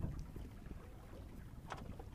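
Low wind rumble on the microphone aboard a small boat on open water, with a light click near the end.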